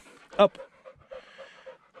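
A dog panting rapidly and steadily, about four breaths a second, after a run.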